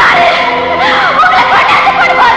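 A woman's voice wailing in short arcs that rise and fall in pitch, over background film music with long held tones.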